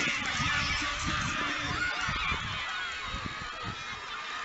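A crowd of young spectators' voices shouting and cheering together, many overlapping high-pitched calls, urging on runners in a race.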